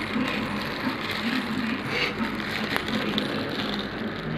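Thin plastic bag crinkling and rustling as cooked rice is tipped out of it onto a plate, over a steady background hum.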